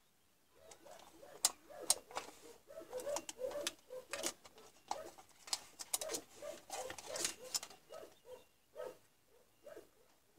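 A rapid run of short, low animal calls, a few each second, mixed with sharp clicks.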